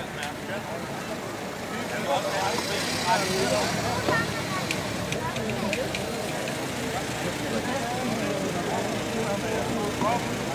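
Several voices talking over one another outdoors, a general murmur of chatter from performers and onlookers, with a steady low rumble and a few small clicks underneath.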